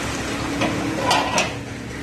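A steel ladle clinking against a steel wok of melted ghee, with a few short metallic knocks about halfway through, over a steady background noise.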